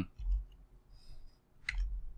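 A few faint clicks of computer keyboard keys, with a sharper click near the end, and a soft low thump just after the start.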